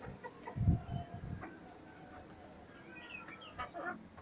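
Chickens clucking softly while they peck at a tray of wheat fodder, with a dull thump about a second in and a few light clicks near the end.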